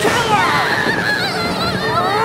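Shrill, wavering screams that slide up and down in pitch, from an actor being attacked on stage.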